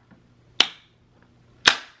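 Two sharp hand claps about a second apart.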